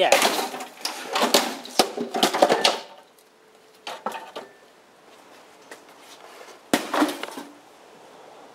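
A pickaxe smashing into a stack of stereo speaker cabinets, which crash down and clatter onto stone paving, with loud voices and laughter over the first few seconds. After that it is quieter, with a short clatter about four seconds in and one sharp knock near seven seconds.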